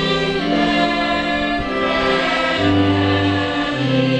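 A choir singing a slow hymn in parts, each chord held for about a second before moving to the next.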